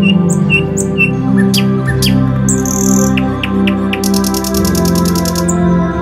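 Soft ambient music of sustained, slowly shifting tones with birds chirping over it: short repeated high chirps through the first half, then a fast, buzzy trill about four seconds in that lasts over a second.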